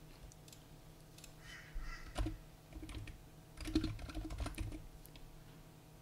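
Computer keyboard typing in two short bursts, about two seconds in and again around four seconds in, over a faint low hum.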